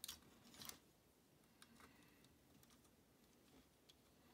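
Near silence with faint clicks and light rubbing of the plastic parts of a Transformers MB-03 Megatron action figure being handled. A couple of clearer clicks come in the first second, then only scattered soft ticks.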